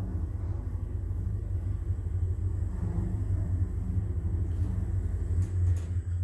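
Schindler passenger lift car travelling between floors, heard from inside the car as a steady low hum, with two short clicks near the end.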